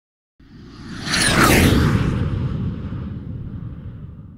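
Whoosh sound effect over a low rumble, swelling to a peak about a second in with a few falling whistle-like glides, then slowly dying away.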